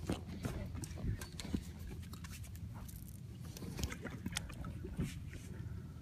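Hooked longnose gar splashing lightly at the water's surface, with scattered short clicks and knocks over a low steady rumble.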